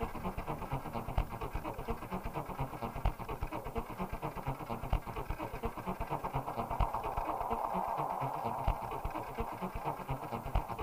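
Electronic IDM music played live from a laptop: dense, fast glitchy clicking percussion over steady low beats, with a noisy mid-range texture swelling in about seven seconds in.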